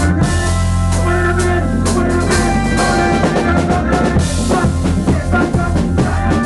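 Gospel soca band rehearsing an instrumental passage of a new song: a drum kit keeps a steady beat over bass and other pitched instruments.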